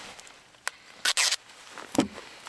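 White foot tape pulled off its roll and torn to length: a brief ripping sound about a second in, with a small click before it and another near the end.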